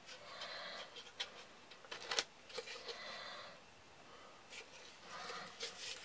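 Faint handling sounds of a tin and its tight-fitting kydex holder: soft rustling and scraping with a few light clicks, the sharpest a little after two seconds in.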